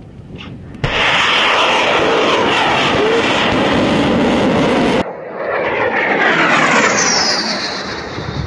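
Sea-launched cruise missile's rocket motor firing, loud dense noise that starts suddenly about a second in. After a cut, a second stretch of jet-like noise from the missile in flight carries a falling whistle as it passes.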